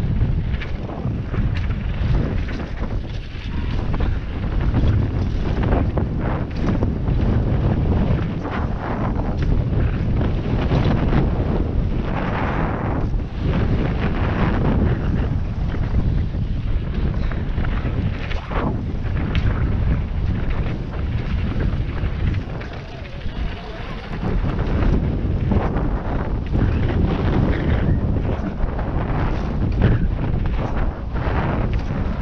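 Wind buffeting a helmet camera's microphone on a fast mountain-bike descent, with tyre noise on dirt and gravel and frequent short knocks and rattles as the bike runs over bumps.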